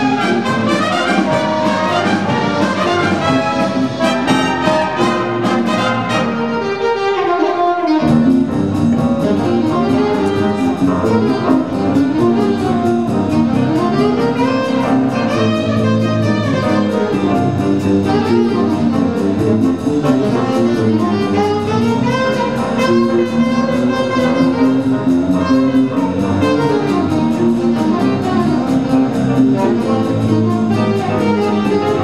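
A live school jazz band of saxophones, trumpets and trombones with a drum kit plays a big-band jazz chart. Its low end fills in about eight seconds in.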